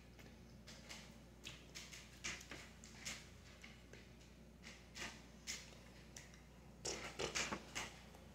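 Faint mouth clicks and breath puffs from a person silently mouthing words, over a low steady hum. Near the end comes a quick run of louder breathy puffs.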